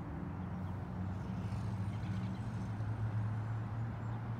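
Steady low hum of an engine running, with a constant low background rumble.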